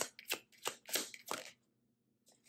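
A tarot deck being shuffled by hand: a handful of short, quick card slaps that stop about a second and a half in.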